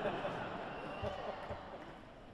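Pause in stage talk between songs at a live rock concert: faint voices over hall noise, with two dull low thumps about a second in and half a second later.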